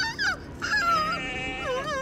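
High-pitched, wavering whimper-like cries, several short calls bending up and down in pitch, with a lower wobbling cry near the end.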